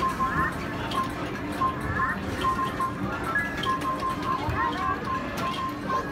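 Arcade game music and sound effects: a repeating electronic tune of short, evenly spaced beeps with rising chirps every second or so, over a background of arcade noise and clicks.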